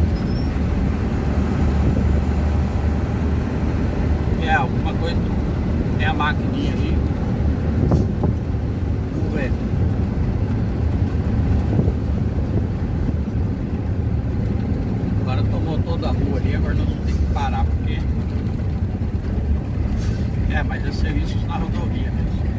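Steady low drone of a truck's engine and road noise, heard from inside the cab while cruising on a highway.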